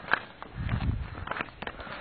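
Footsteps on an outdoor path: a few uneven steps and knocks while walking.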